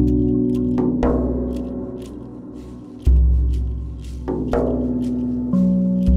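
Steel tongue drum (a RAV drum in B Celtic double ding) playing slow single notes that ring on and fade, with a deep shaman drum beat about halfway through and another at the very end.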